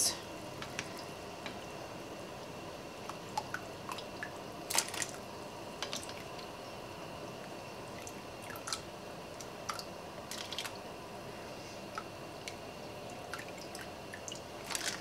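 Scattered light clicks, taps and drips as a slotted spoon moves wet, freshly sliced potatoes around in a glass dish and lifts them out of the water, over a steady low hiss.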